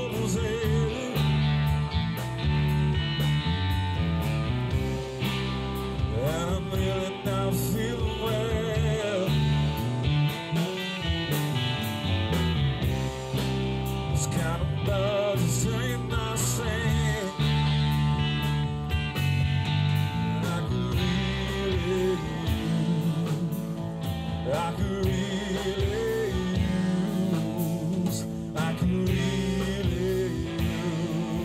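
A live rock band playing: electric guitars over bass guitar and drums.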